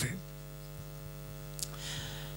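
Steady electrical mains hum from the wired microphone and sound system, a low buzz heard plainly in the pause between spoken phrases, with a faint click about one and a half seconds in.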